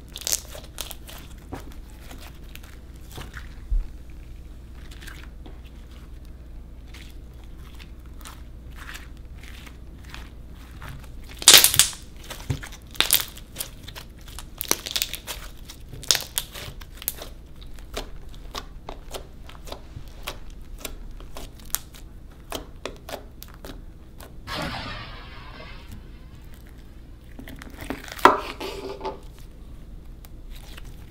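Liquid-starch slime being kneaded and squeezed by hand, giving a string of small sharp pops and crackles as trapped air bursts. The loudest pops come about a third of the way in and again near the end, with a couple of seconds of soft hiss shortly before the end.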